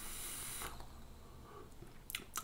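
A short, faint hiss of air being sucked through a Velocity dripping atomizer on a vape mod, fading out after under a second. The atomizer's air holes are closed, so the draw produces no vapour.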